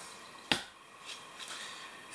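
A blob of wet thinset mortar dropped onto a Kerdi-Board foam tile-backer panel, landing with a single sharp slap about half a second in.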